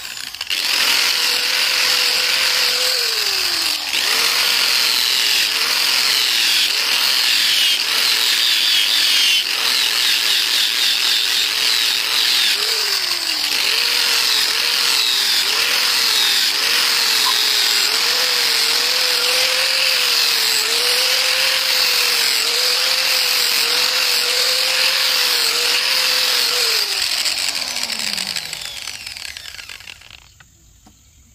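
Angle grinder with a sanding disc smoothing a steel machete blade. The motor comes up to speed right at the start, and its whine dips and recovers again and again as the disc is pressed onto the steel, over a steady grinding hiss. Near the end it winds down with a falling pitch.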